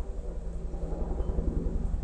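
A steady low hum under faint background noise, with no distinct sound standing out.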